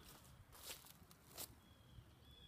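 Two faint footsteps on grass and dry leaves, a little under a second apart, over near silence.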